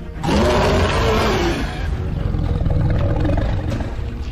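A dragon roar sound effect that starts a moment in, its pitch rising and then falling over about a second and a half, and then trails into a low rumble.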